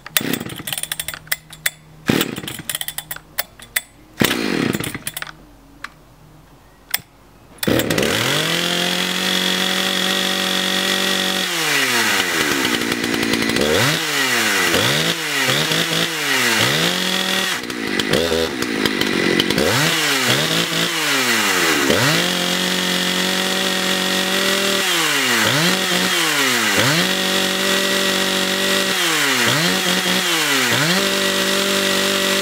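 Husqvarna 272XP two-stroke chainsaw being pull-started: a few short pulls of the recoil starter cord, then the engine catches about eight seconds in. It runs at high revs and is then throttled up and down over and over, the pitch dropping and climbing back again.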